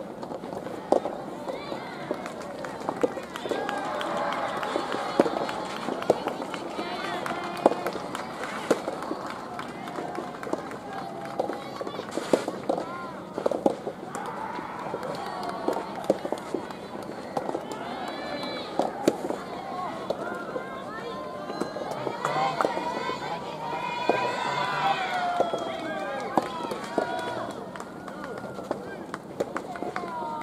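Soft tennis rackets striking the soft rubber ball in rallies: sharp, irregular pops spread through the stretch. Voices call out over them throughout, most of all near the end.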